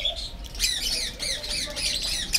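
Cockatiels calling in a colony aviary: a dense run of quick, high, squawking chirps, overlapping one another and growing busier about half a second in.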